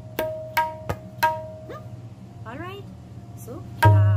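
Tabla played by hand, the dayan ringing on a clear pitch: four evenly spaced strokes, about three a second, then a pause with softer sounds, and a loud stroke with a deep bayan bass near the end.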